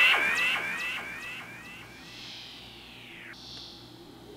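Stylophone Gen X-1 stylus synth run through Drolo Molecular Disruption and Ezhi & Aka Moomindrone effects pedals: rising pitch glides with echoing repeats that fade away over the first two seconds, then a slow falling sweep and a high steady buzzy tone near the end.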